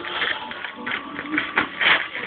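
Crinkly gift wrapping rustling in quick, irregular bursts as it is handled, with faint music in the background.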